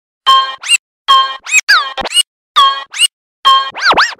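Turntable scratching of a pitched sample: short cuts in a repeating rhythm with silent gaps between, each cut holding one pitch or swooping up or down.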